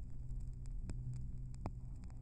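Old shellac 78 rpm record playing on a turntable during a quiet stretch: a steady low hum with surface-noise clicks, two sharp ones a little under a second apart.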